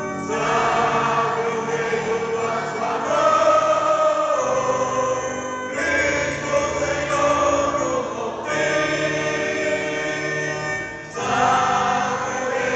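Choir singing a hymn in Portuguese, in phrases of long held notes that change about every three seconds.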